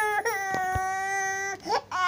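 Baby crying: one long, steady wail of about a second and a half, a short catch of breath, then the next cry starting near the end.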